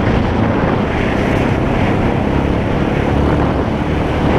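ATV engine running steadily while riding a dirt trail, with wind noise on the camera microphone.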